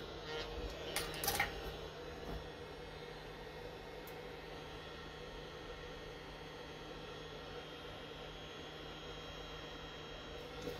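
A few light metallic clicks and knocks in the first couple of seconds as a chuck key is fitted to the lathe's scroll chuck, then only a steady low hum.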